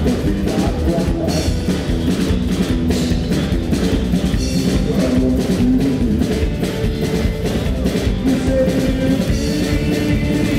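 A live band playing amplified music with a steady drum beat: upright double bass, electric guitar and drum kit.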